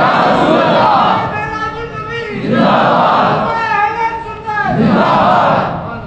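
Crowd of many voices chanting loudly together, in about three surging rounds.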